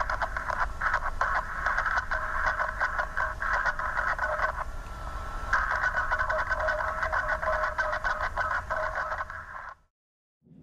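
Metallic scraping noise over a recorded aircraft radio transmission: a tinny, narrow-band crackle of rapid irregular scratches. It thins out briefly about halfway through, then cuts off suddenly near the end. It is the unexplained noise said to follow the pilot's last words before the transmission ended.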